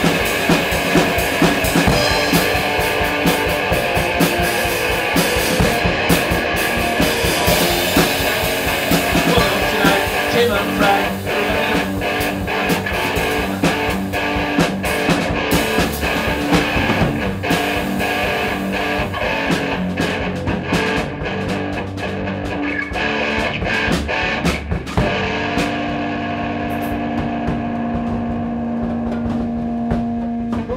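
Live improvised rock jam of guitar and drum kit playing together. Near the end the drumming thins out and held guitar notes ring on.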